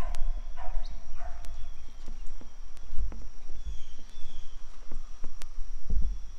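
Low rumbling noise on the microphone with scattered light clicks, and a few faint high chirps from a small bird, about a second in and again past the middle.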